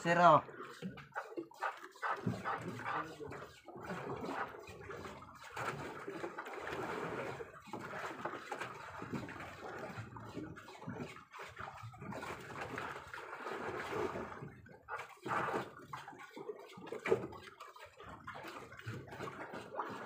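Seawater sloshing and lapping against a small boat's hull, with indistinct voices talking at times.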